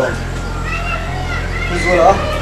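Voices speaking, over a steady low hum.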